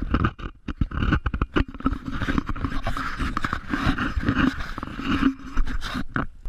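Handling noise on a GoPro Hero 3 camera: irregular scraping, rubbing and knocks of hands and the mount against the camera body, heard close and muffled.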